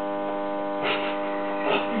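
A steady electrical hum with many overtones, unbroken and unchanging.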